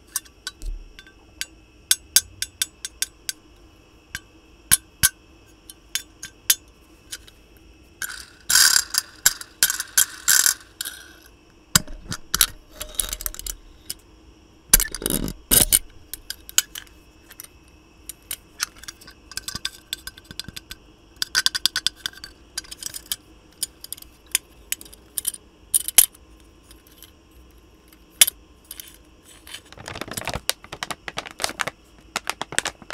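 A miniature toy wagon handled close to a microphone: a run of sharp clicks and taps, broken by several longer spells of quick rattling in the middle.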